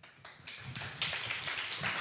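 Small audience applauding, a scatter of hand claps that starts about half a second in and fills out about a second in.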